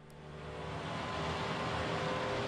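Bobcat S250 skid-steer loader's diesel engine running with a steady hum, growing louder over the first second and then holding.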